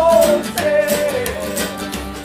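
A small acoustic band playing live: strummed acoustic guitar over double bass. A held, wavering melody line falls away in the first half second.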